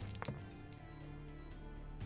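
Three dice dropped into a dice tray, a few quick clicks as they land and settle about the first quarter-second, over quiet background music.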